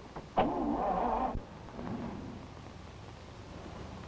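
An old car's engine: a loud burst of revving about half a second in that cuts off after about a second, then a low steady running rumble.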